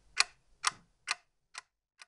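Clock ticking, about two ticks a second, each tick fainter than the last until it stops.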